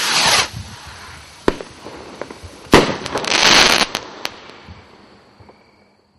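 Consumer fireworks going off. A shot launches with a loud hiss, then come sharp bangs a little over a second apart, the loudest about three seconds in. A dense rushing crackle of about a second follows, then one more smaller bang, and the sound fades away near the end.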